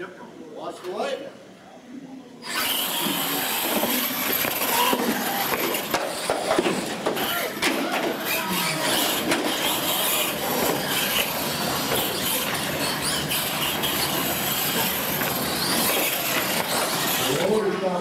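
Two radio-controlled Pro Mod monster trucks racing on a concrete floor: electric motors whining and tyres scrubbing. It starts suddenly about two and a half seconds in as they launch, and stays loud and steady.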